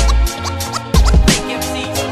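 Hip hop beat with deep bass, kick and snare hits, and turntable scratches gliding in pitch over it.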